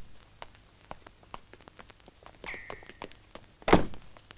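Light scattered clicks and taps, a brief high-pitched squeal about two and a half seconds in, and a heavy thud near the end.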